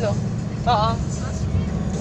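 Steady low road and engine rumble inside the cabin of a moving car, with a brief spoken "ha ah" about half a second in.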